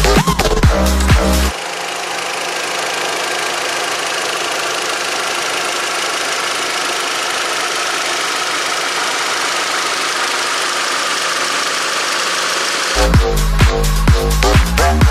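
Volkswagen Golf GTI's 2.0-litre TSI turbocharged four-cylinder engine idling steadily. Electronic dance music plays before it, cuts off about a second and a half in, and comes back near the end.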